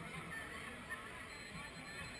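Faint outdoor ambience of distant voices and crowd chatter.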